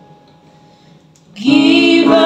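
A short pause in a slow ballad, with a faint held keyboard note. About a second and a half in, women's voices singing in harmony come back in over an electronic keyboard.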